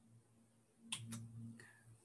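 Near silence, then two faint sharp clicks about a second in, close together, followed by a soft low hum.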